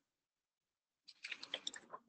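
Silence, then about a second in a short, dense run of rapid clicks and rustling close to the microphone.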